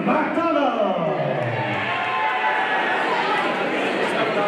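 A ring announcer's drawn-out call over the hall's PA system, one long note falling in pitch, followed by the crowd cheering and clapping.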